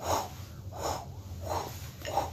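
A man's breathy vocal sound effect: a series of short whooshing puffs of breath, about one every half second, imitating a drumstick flying through the air in slow motion.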